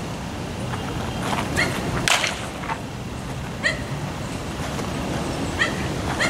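Baseball bat hitting a pitched ball: one sharp crack about two seconds in, a fainter hit later. Short high chirps recur every couple of seconds.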